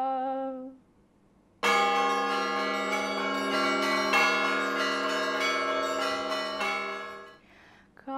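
A woman's held sung note ends in the first second. After a short silence, church bells ring, many strikes overlapping for about six seconds, and then they stop.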